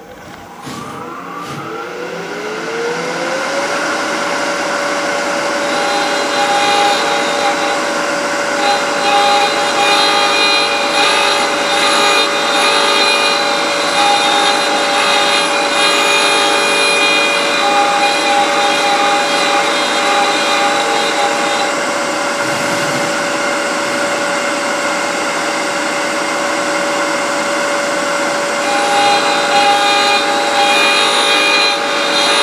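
Small router motor on a lathe threading jig spinning up over a few seconds into a steady high whine, then cutting threads into a turned box, with a rougher cutting noise that comes and goes as the cutter bites. The cutting eases off for a few seconds near the end and then starts again.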